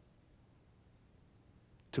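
Near silence: a pause in a man's speech, with only faint room tone, broken near the end by his voice starting again.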